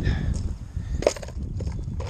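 Footsteps on gravel with a low rumble of wind on the body-worn microphone, and one sharper click about a second in.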